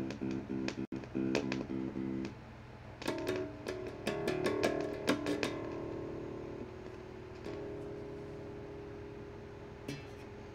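Cheap electric bass guitar through a small practice amp, played by a beginner: a quick run of repeated plucked notes, about five a second, for the first two seconds. After a short lull come a cluster of notes and then held notes left to ring.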